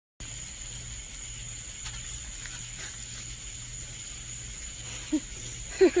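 Steady faint background hiss and hum with a high thin tone, then a woman laughing in two short bursts near the end.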